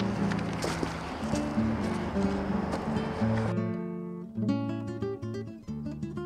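Acoustic guitar music playing as a backing track. For the first half a rustling outdoor noise with small clicks runs under it; about three and a half seconds in that noise drops away and the guitar plays on alone.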